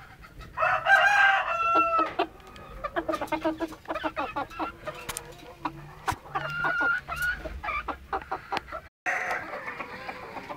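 Chickens: a rooster crows once, a long call starting about half a second in, followed by hens clucking and calling in short bursts.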